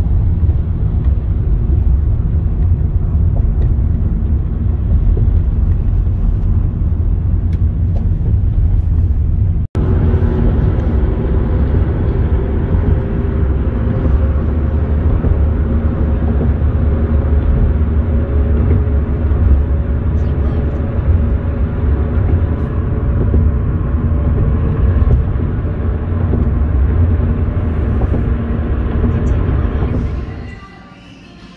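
Steady low rumble of a moving vehicle heard from inside, with a few faint steady tones running through it. The sound drops out for an instant about ten seconds in.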